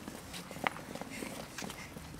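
Footsteps on paving stones: irregular short taps and scuffs of several children's shoes.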